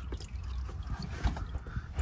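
Engine oil trickling and dripping from the oil filter mount into a plastic drain pan, with a few small knocks.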